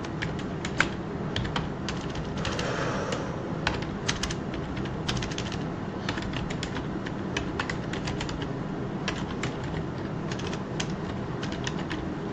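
Irregular clicks of typing on a computer keyboard, over the steady low hum of an electric fan.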